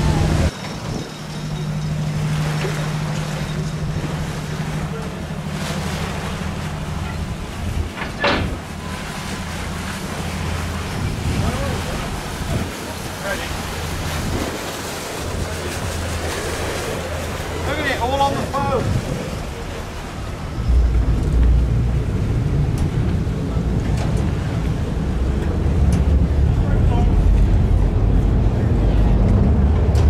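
A passenger ferry's engine running with a steady low hum as the boat comes into harbour. About two-thirds of the way through it gets markedly louder and deeper while the ferry manoeuvres alongside the landing pontoon.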